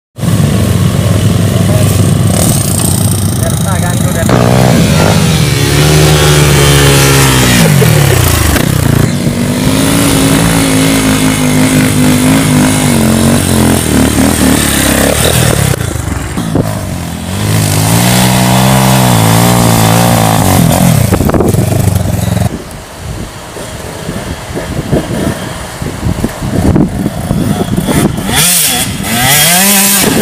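Dirt bike engines running and revving, the pitch falling, holding and rising with the throttle, loud and close for the first twenty-odd seconds. After a sudden cut the engine sound is quieter and rougher.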